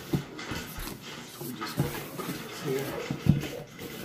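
Cardboard shipping box being opened by hand: flaps scraping and rustling against the packing, with a few knocks, the sharpest about three seconds in.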